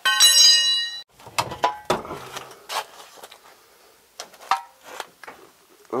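A steel tire iron set down against metal, ringing clearly for about a second, then a run of scattered metal clanks and knocks as old parts, including a brake booster with its master cylinder, are shifted and lifted.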